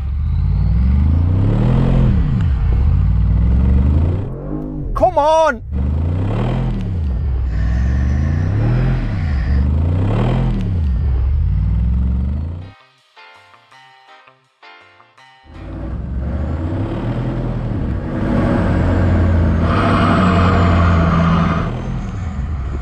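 Several 4x4 engines revving hard under load, rising and falling again and again as the vehicles strain against each other on a tow rope without moving, with a brief sharp whine about five seconds in. The engines drop away briefly after about thirteen seconds, then come back as a steadier high-revving drone.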